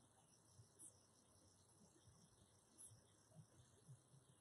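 Near silence: faint room tone with a faint high-pitched chirp about every two seconds.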